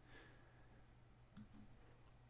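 Near silence: faint room tone with a low steady hum, and a single faint computer mouse click about one and a half seconds in.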